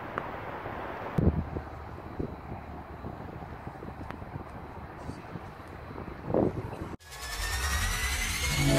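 Steady low outdoor rumble with a couple of soft thumps and a brief voice near the end. About seven seconds in, electronic music cuts in abruptly.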